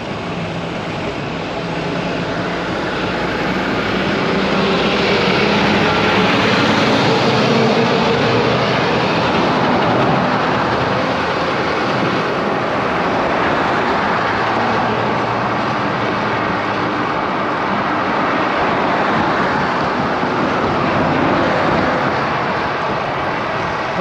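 Wind and road noise from riding a bicycle along a road, with a heavy truck with a flatbed trailer overtaking: the noise swells a few seconds in as it passes, then eases as it pulls away ahead.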